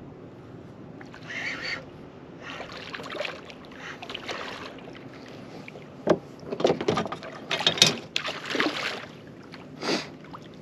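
Water sloshing and knocks against a plastic fishing kayak's hull while a hooked barracuda is played close alongside. There are a few soft splashy bursts in the first half, then a run of sharp knocks from about six seconds in.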